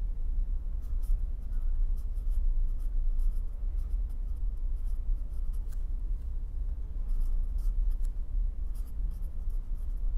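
A pen writing on paper: short, irregular scratches and taps of the letter strokes, over a steady low hum.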